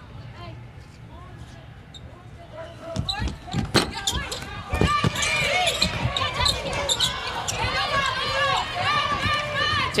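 A basketball thumps on a hardwood court a few times. From about five seconds in, sneakers squeak rapidly and repeatedly on the hardwood amid more ball bounces as play runs up the court.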